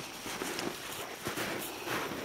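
Irregular footfalls crunching in snow, a string of soft thuds with a few stronger ones in the second half.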